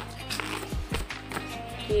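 Background music with a steady low tone, with a few sharp crackles of stiff paper being folded and creased by hand.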